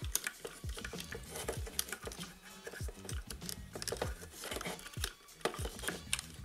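Background music with a steady bass beat, with light clicks of the plastic Dino Megazord toy's parts being turned and handled.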